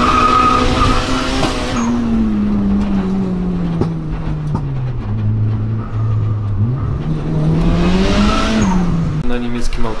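A turbocharged Honda Civic's engine heard from inside its stripped, roll-caged cabin. It is held high in the revs near the start, then falls away to a low, steady note, climbs again and drops back near the end.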